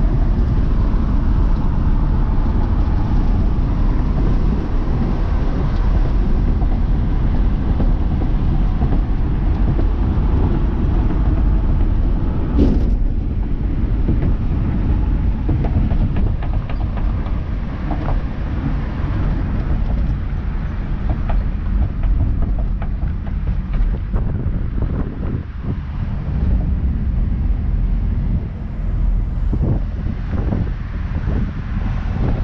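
Car being driven at road speed, heard from the driver's seat: a steady low rumble of engine, tyres and wind. There is one brief knock about 13 seconds in, and the noise eases in the second half as the car slows toward an intersection.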